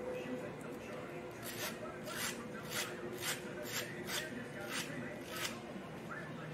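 Wire-toothed narrow rougher scraping the back of a cast plastic replacement deer nose in quick strokes, about two a second, starting about a second and a half in. The scuffing roughs up the smooth, shiny plastic so the epoxy will bite.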